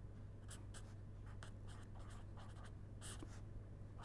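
Pen scratching faintly on paper in a few short strokes as letters are written and underlined, over a low steady hum.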